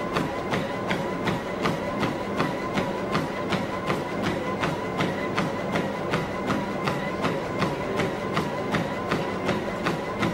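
Running footfalls slapping on a treadmill belt, an even rhythm of about three strikes a second, over the steady whine of the treadmill's motor.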